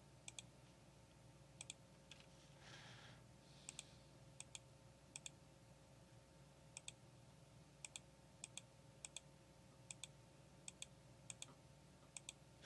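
Quiet computer mouse clicks, each a quick press-and-release pair, about fifteen of them at irregular intervals over a faint steady hum, as calculator buttons are clicked. A soft hiss about three seconds in.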